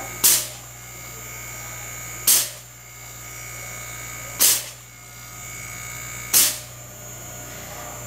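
Small rotary compressor of a Panasonic inverter air conditioner's outdoor unit, forced to run without the indoor board as done for a refrigerant pump-down, running with a steady hum. Four short, sharp hisses come about two seconds apart and are the loudest sounds.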